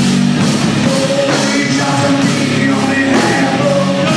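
Live rock band playing loud: electric guitar, bass guitar and drum kit, with a steady beat.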